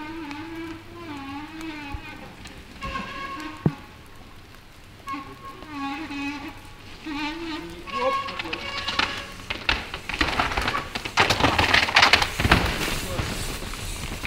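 A mountain bike rattling and clattering fast down a rough, wet rock trail, with tyre and chassis knocks coming thick and loud in the second half.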